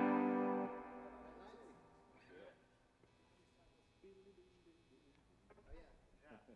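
An electric guitar chord ringing out and fading away over the first couple of seconds, followed by a near-quiet stage with faint small sounds.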